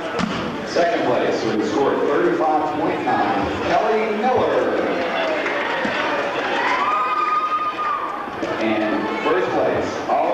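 Indistinct chatter from many people in a large echoing hall, with a voice holding one pitch for about a second near the end. A few dull thumps sound under the chatter, one right at the start and a couple about halfway through.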